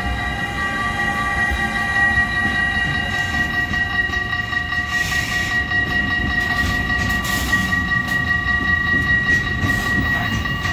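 Freight train rumbling past a level crossing, an SBB Cargo International Vectron electric locomotive followed by container and trailer wagons. A steady high ringing from the crossing's warning bell runs over it.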